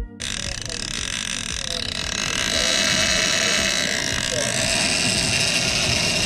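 Live outdoor audio from a camera on a boat at sea: wind buffeting the microphone over a steady hiss of wind and water.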